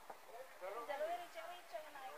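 Indistinct voices of people talking, starting about half a second in, with a brief click just before.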